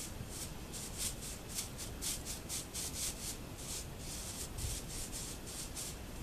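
Corn broom sweeping sand off a horse's coat: a steady run of quick, short brushing strokes, about three a second.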